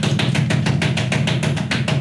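Drum beaten in a fast, even roll of about seven strokes a second, loud and steady.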